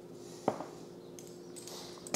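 A teaspoon of salt tipped from a metal measuring spoon onto shredded cabbage in a stainless steel bowl: a faint granular hiss, with a single light clink of the spoon on the bowl about half a second in.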